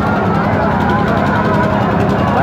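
A loud, steady low drone of running machinery, with people's voices chattering over it.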